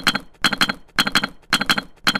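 Sound effect of plastic toy bricks clicking and clattering into place: four quick rattles of sharp clicks, about two a second.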